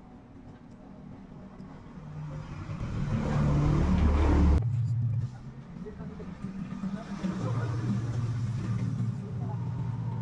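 A motor vehicle's engine grows louder for about two seconds and then cuts off suddenly. A steady low engine hum follows later.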